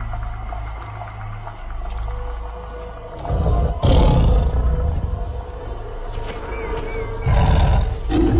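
Dramatic music over a deep big-cat roar sound effect, with a sharp hit about four seconds in and a louder surge near the end.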